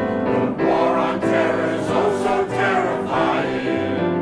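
Mixed choir of men's and women's voices singing in harmony, holding chords.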